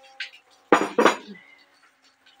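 Tableware clinking twice in quick succession, about three-quarters of a second in, with a brief ring after, as food is served at the table.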